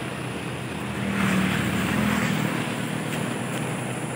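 A road vehicle passing by on the highway, its noise swelling and fading between about one and two and a half seconds in, over a steady low engine hum.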